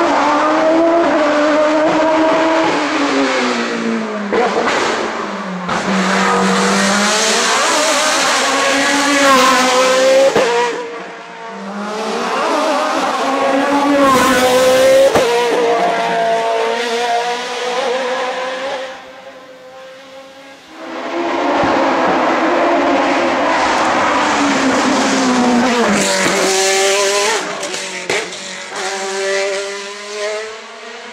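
Osella FA30 sports prototype's Zytek racing engine at full throttle on a hillclimb: a high-pitched engine note that rises through the gears and drops sharply on downshifts into the bends. This comes in several passes, with short quieter gaps between them.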